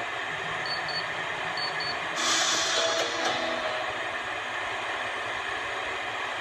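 Steady hiss of static. About a second in come four short, high beeps, and a little past two seconds the hiss briefly grows louder, with faint tones under it.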